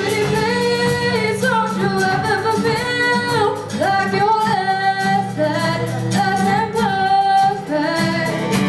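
A young woman singing a pop song into a microphone, backed by acoustic guitar and keyboard in a live band performance.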